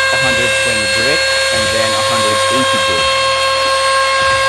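Compact electric trim router running at speed as it trims the edge of a wood panel, a steady high-pitched motor whine.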